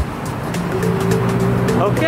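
Background music over street traffic, with a vehicle engine humming steadily; a voice begins near the end.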